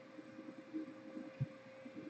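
Faint handling of a stack of Topps Chrome football trading cards, cards sliding over one another with a few soft ticks, over a steady low electrical hum.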